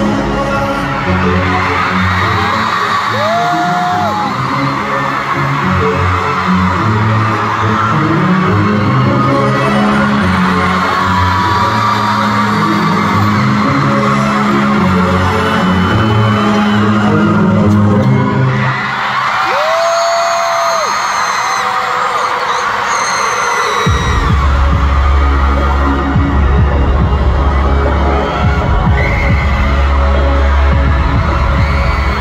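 Loud live concert music over an arena sound system, with sustained bass notes and the noise of a large audience mixed in. About 24 seconds in, a deep pulsing bass beat comes in and carries on.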